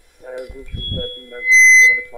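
A voice talking briefly on a radio broadcast, then a loud, steady, high electronic beep about one and a half seconds in that lasts under half a second.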